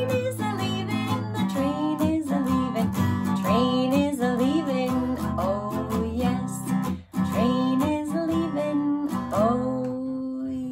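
Strummed acoustic guitar accompanying a woman singing a children's song, with a brief break in the playing about seven seconds in.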